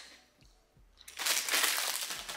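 Plastic packaging or a shopping bag rustling and crinkling as groceries are handled. It starts about a second in and runs for about a second.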